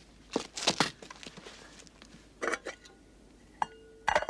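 Hard objects knocking and clinking, a few separate strokes, with a short metallic ring near the end.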